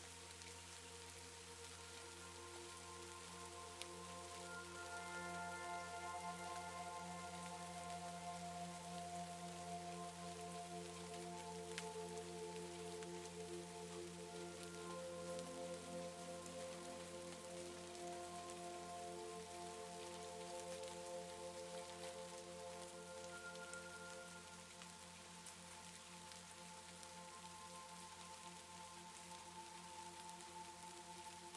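Steady rain with soft ambient music of long, slowly changing held notes.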